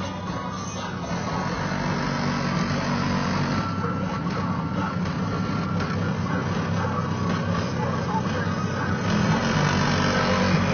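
A boxy Chevrolet Caprice running steadily, with music playing from its stereo over the engine.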